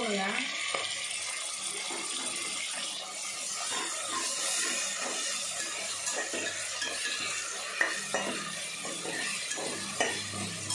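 Onions, green chillies and ginger-garlic paste sizzling in oil in a metal pot, while a stainless steel slotted spatula stirs and scrapes across the bottom in repeated short strokes. There is a sharper metal clink about three-quarters of the way through.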